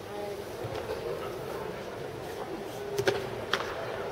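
Sports-hall ambience: a steady low murmur of distant voices from the crowd, with three or four sharp slaps in the last second.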